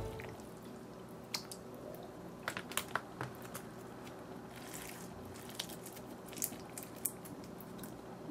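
Rainbow slime being squeezed and pressed by hand, with foam-bead clay pushed onto it: faint sticky clicks and squelches, coming irregularly.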